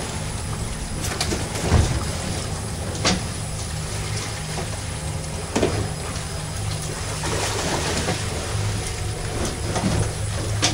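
Boat engine running steadily under wind and water noise, with a few sharp knocks.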